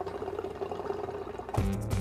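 Hookah water pipes bubbling as smoke is drawn through them, a watery gurgle over a single held tone. About one and a half seconds in, music with a strong bass line cuts in.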